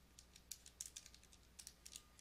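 Faint, quick clicks of keys being pressed, several a second and unevenly spaced, as when a multiplication is tapped in.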